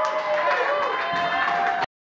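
Live rock club sound as a song ends: wavering, gliding held tones and voices over room noise, cutting off abruptly near the end.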